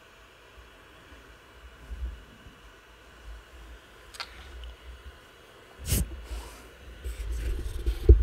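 Microphone handling noise as the mic is moved: low rumbles, a click about four seconds in and a sharp knock about six seconds in.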